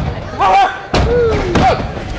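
A wrestler's body hitting the wrestling ring's canvas: one loud slam about halfway through, with voices calling out around it.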